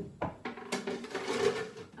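Metal baking trays going into a cast-iron Aga baking oven: two sharp clanks, then a scraping slide of a tray along the oven shelf lasting about a second.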